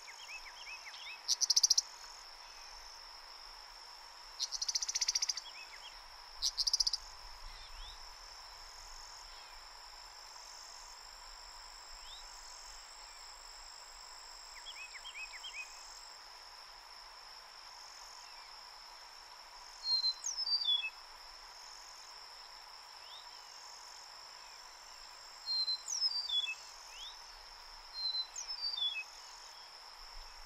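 Eastern meadowlark giving a few short, harsh buzzy alarm calls in the first seven seconds, then, from about twenty seconds in, its normal song of clear whistled notes that slide downward, in three phrases. A steady insect trill runs underneath.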